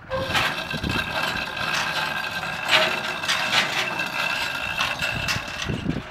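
An engine running with a steady high whine and a continuous metallic rattle, cutting in abruptly and loud throughout.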